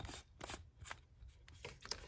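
A light bulb's screw base being twisted by hand into a plastic socket: a few faint clicks and scrapes.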